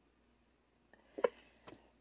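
Tarot cards being handled: one short soft tap a little over a second in and two fainter ticks near the end, with a quiet room in between.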